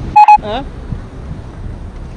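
A brief, loud electronic beep, one steady tone, just after the start, followed by steady low street background rumble.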